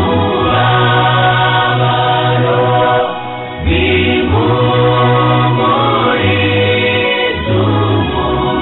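A gospel choir singing over a held bass line that steps between notes, with a brief lull about three seconds in.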